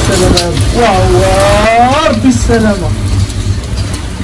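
Steady, dense noise of heavy thunderstorm rain and wind on the microphone, under a woman's long, drawn-out calls.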